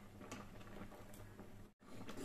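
Faint soft ticks and squelches of a steel ladle stirring thick simmering milk-and-millet kheer in a kadhai, over a low steady hum. The sound cuts out suddenly near the end.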